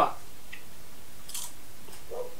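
A brief crunch of microwave popcorn being bitten and chewed about halfway through, against otherwise quiet room tone.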